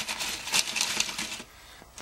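Crushed ice in an aluminum pot clinking and crunching as temperature probes and their cables shift in it: a dense run of small sharp clicks for about a second and a half, then quieter.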